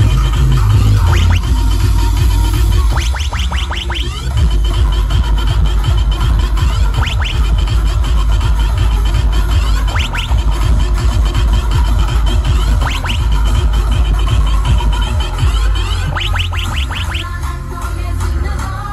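Loud electronic dance music played through a large outdoor DJ sound system, with a heavy, dense bass and short clusters of quick pitch sweeps every few seconds.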